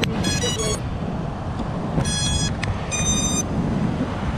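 Steady rushing wind buffeting the microphone of an FPV quadcopter's onboard camera, over surf. Three short bursts of high electronic tones sound near the start, at about two seconds and at about three seconds.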